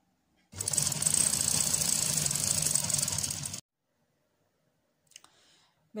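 Sewing machine running fast, stitching along a folded velvet edge for about three seconds, then stopping abruptly.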